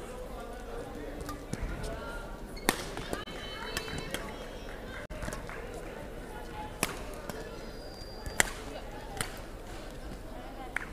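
Badminton rackets striking shuttlecocks in a sports hall: a handful of sharp cracks at irregular intervals, the loudest near the end, with brief high squeaks of court shoes and a steady murmur of voices in the hall.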